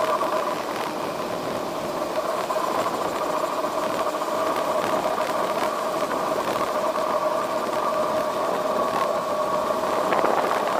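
Air rushing over a two-seat glider's canopy and airframe, heard inside the cockpit, with a steady hum in two pitches as the glider flies its final approach to land.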